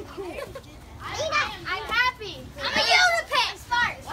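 Girls' high voices shouting and squealing excitedly during a fast ball game. A hand slaps the rubber ball right at the start.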